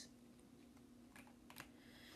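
Near silence: faint room tone with a steady low hum and a few soft clicks about a second and a half in.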